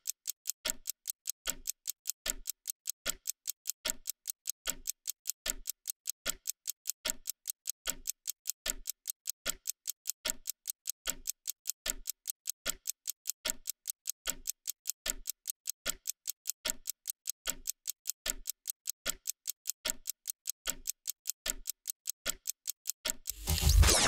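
Ticking-clock sound effect behind an on-screen countdown timer: an even, quick tick-tock that counts down the 30 seconds given for an answer.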